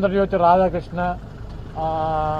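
A man speaking, his voice held on a long drawn-out vowel near the end.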